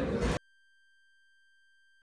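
Room noise cuts off abruptly a moment in, leaving near silence with a faint, steady, high electronic tone.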